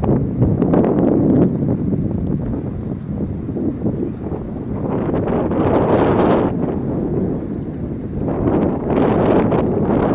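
Wind buffeting the microphone with a low rumble, swelling in stronger gusts about halfway through and again near the end.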